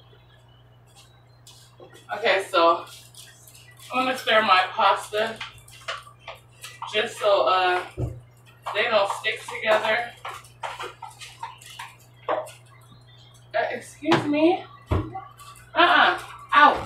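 Indistinct voices talking in bursts from about two seconds in, too unclear for words to be made out, with scattered light clicks and clinks between them. A steady low hum runs underneath.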